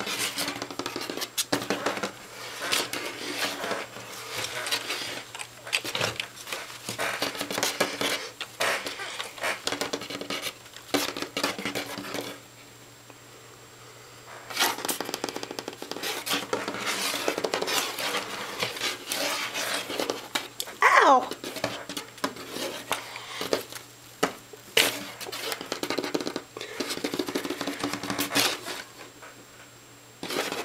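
A pet rat's claws scrabbling and clicking on a hard surface as it scampers about and plays with a hand: quick irregular clicks and scratches, pausing for a couple of seconds about halfway through.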